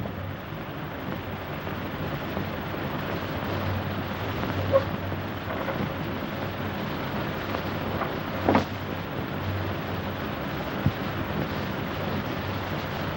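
Steady hiss and low hum of an old optical film soundtrack, broken by a few faint clicks and one short knock.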